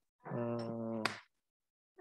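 A person's voice holding one steady, level note for about a second over a video call, with a sharp click near its end; the sound then cuts to dead silence.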